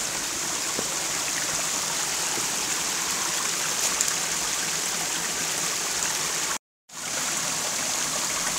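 Shallow jungle stream running over rocks: a steady rush of water. The sound cuts out completely for a moment about two-thirds of the way in.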